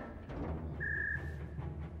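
Low, tense film score with a rumbling drum, and one short high electronic beep about a second in: a control-room computer alert signalling a tripped motion sensor.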